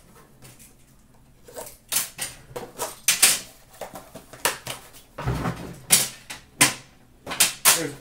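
Plastic shrink-wrap being pulled off a metal card tin, crinkling in quick bursts, with clicks and knocks of the tin being handled and a heavier thump about five seconds in.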